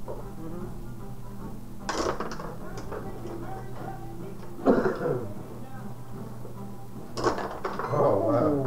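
Table hockey game in play: the puck and the metal player figures on their rods clatter and click in three short bursts, about two, five and seven seconds in.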